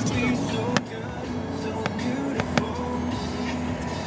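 Steady road and engine hum inside a moving car's cabin, with music playing over it and a few sharp clicks.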